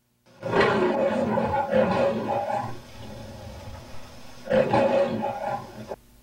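A lion-like roar, twice: a long one starting about half a second in, then a shorter one about four and a half seconds in.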